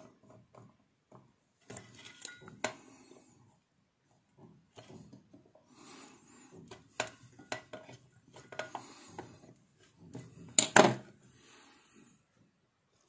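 Needle-nose pliers working the leads of power transistors on an aluminium heatsink: a run of small irregular metallic clicks and scrapes. A louder clatter comes near the end as the pliers are set down on the wooden bench.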